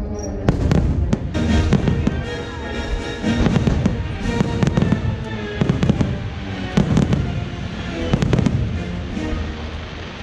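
Aerial fireworks bursting in a quick string of sharp bangs over the show's music soundtrack.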